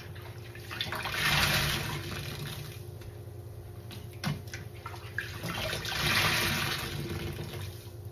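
Soap-laden foam sponge squeezed by hand in a sink of sudsy rinse water, with water gushing out of it twice, about a second in and again past the middle. A brief splash comes between the two squeezes.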